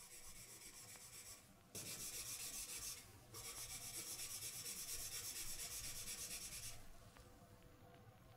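A faint, rasping hiss with a quick flutter, mostly high in pitch. It jumps louder a little under two seconds in, breaks off for a moment about a second later, and sinks back to a faint hiss about a second before the end.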